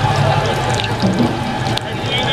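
Battered onion fritters deep-frying in a kadai of hot oil: a steady sizzle with many small crackles.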